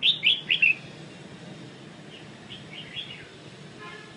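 A caged songbird calling: four loud, quick chirps right at the start, then a softer, scattered run of chirps about two to three seconds in.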